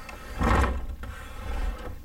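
A plastic countertop water-filter unit being turned around on the counter while plastic tubing is handled: rough scraping and rubbing with a low rumble, about half a second in and again near the end, then a short click.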